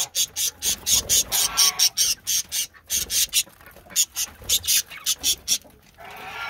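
A flock of budgerigars chattering while they feed: a dense run of short, high chirps from several birds at once, with a brief warble a second or so in. The chatter thins out a little about halfway through.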